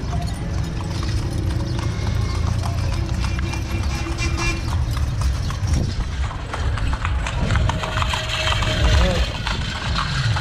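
Carriage horse's hooves clip-clopping on the paved street as a horse-drawn carriage rolls along, over a steady low rumble of the ride.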